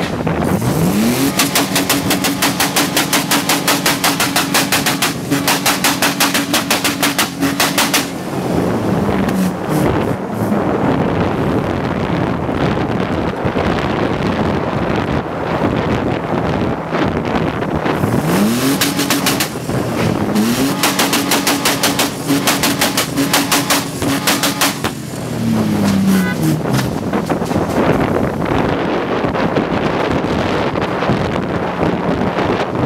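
Car engine revved hard twice, rising to high revs and held there with a rapid stutter for several seconds, then dropping away. Wind rushes across the microphone of a moving car in between.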